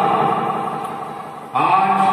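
A man's voice chanting in a drawn-out melodic style, amplified through a microphone: one long held note fades away, then about one and a half seconds in a new note begins with an upward slide in pitch and is held.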